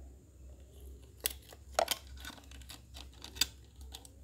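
Several sharp clicks and taps from an aluminium drink can with a plastic bottle neck fitted to it being handled and turned over. A steady low hum runs underneath.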